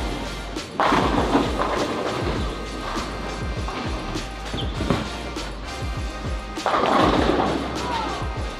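Background music over the sound of a bowling centre, with two crashes of a ball striking the pins, about a second in and again about seven seconds in.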